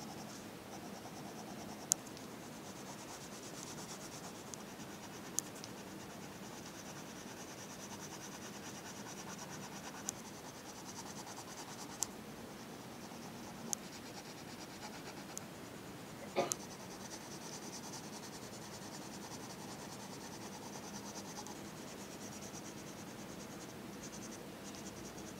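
Colour pencil shading on paper: a steady, faint scratching. Several sharp clicks come at intervals, the loudest about two seconds in and a double one about sixteen seconds in.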